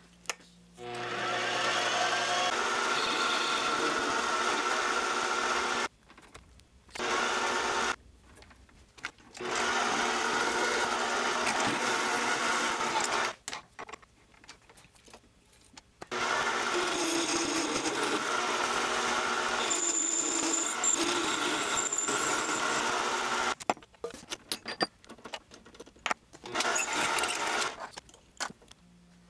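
Mini metal lathe running in several separate stretches of a few seconds each: a steady motor and gear whine with cutting noise as it turns and drills a bar of aluminum. Each stretch cuts off abruptly.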